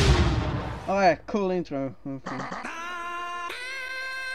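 The fading rumble of an on-screen explosion, then a chopped-up, stuttering voice clip with pitch jumping up and down. From about two and a half seconds in, a voice holds one long, steady sung note.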